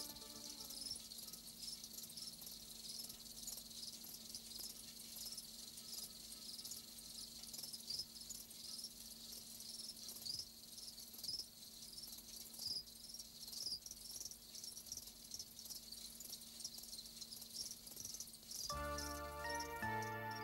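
Faint, steady chirping of crickets, a rapid train of high chirps. Background music comes back in near the end.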